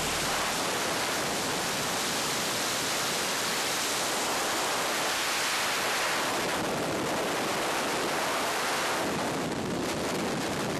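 Steady roar of freefall airflow buffeting the camera's microphone, an even rushing noise with no break.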